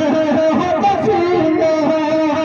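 A man singing an Urdu naat into a microphone, a slow melody of long held notes that step up and down in pitch, amplified through a PA system.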